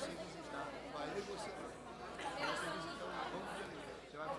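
Indistinct conversation of several people talking at once, faint and overlapping, picked up away from the microphones in a large chamber.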